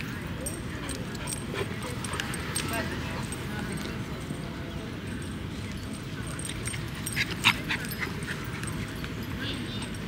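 Dogs at play giving a few short, sharp yips about seven seconds in, over steady outdoor background noise with distant voices.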